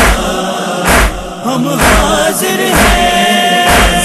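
A noha (Shia lament) chanted by a chorus of voices over a steady, heavy beat that falls about once a second.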